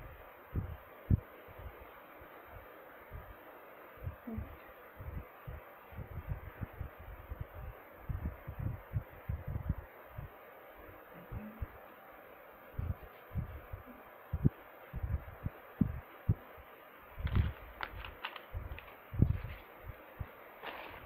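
Irregular, muffled low thumps and bumps of handling noise, from hands moving against and close to the camera's built-in microphone, with a few sharper rustles near the end.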